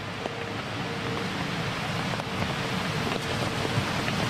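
Steady outdoor background noise, a hiss like wind or light rain on the microphone, with faint voices murmuring underneath and a few soft clicks.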